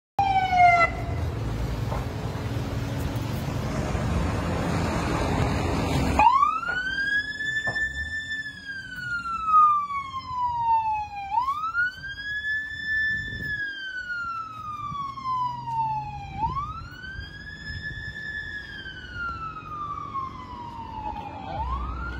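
Ambulance siren wailing in slow cycles, each rising quickly, holding, then falling slowly, about every five seconds. It is preceded by about six seconds of loud rushing noise.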